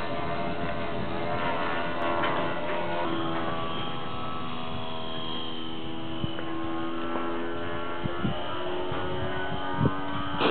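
Electric motor and propeller of a small radio-controlled foam airplane whining steadily in flight, a hum of several steady tones that shift only a little in pitch.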